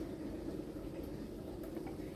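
Quiet room tone: a low steady hum, with a few faint light ticks in the second half.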